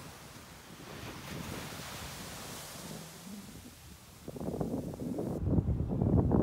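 Steady hiss of distant surf washing on the beach, with wind. From about four seconds in, gusts of wind buffet the microphone in loud, irregular low rumbles.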